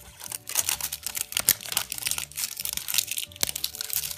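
Crinkly plastic wrapping being picked at and peeled off a large surprise egg, a dense run of irregular crackles, over soft background music.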